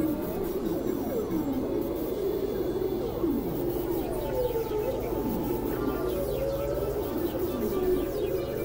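Experimental electronic synthesizer music: a steady low drone under many overlapping siren-like pitch glides that swoop down and rise again, several every second.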